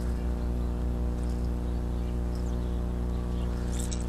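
A steady low hum with many evenly spaced overtones, unchanging in pitch and level, with one faint click at the very start.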